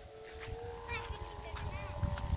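Hummer on a large chong kite, a strung bow set humming by the wind, giving a steady high drone.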